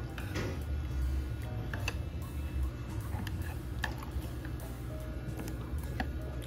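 Metal chopsticks clicking now and then against dishes, a few sharp ticks scattered over a low steady hum.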